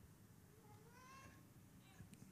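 Near silence: room tone, with one faint, short rising call about a second in.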